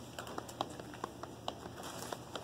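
Scattered light clicks and taps, about four or five a second at an uneven pace, over a low steady room hum in a quiet classroom.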